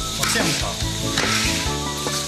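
Puffed rice being stirred fast through hot sugar syrup in a large metal wok with two paddles, a noisy rasping stroke about once a second, as the grains are worked so that the syrup coats them evenly.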